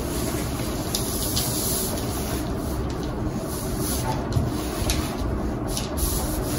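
Scissors cutting through a brown paper pattern: a steady paper rustle with a few faint clicks of the blades.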